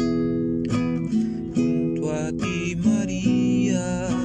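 Acoustic guitar strumming chords in a steady rhythm as an instrumental introduction. About halfway through, a higher, wavering melody line comes in over the chords.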